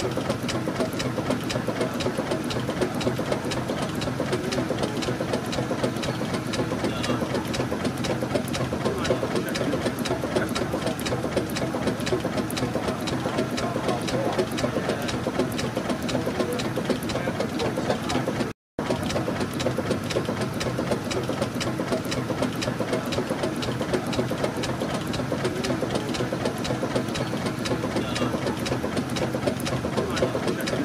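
Burrell Gold Medal steam tractor's engine running, its crosshead, rods and valve gear giving a fast, steady mechanical clatter of fine, even clicks. The sound cuts out for an instant about two-thirds of the way through.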